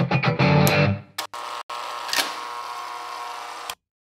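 Outro music on electric guitar: short, chopped chords for about a second, then a final chord left ringing for about two seconds before it cuts off abruptly near the end.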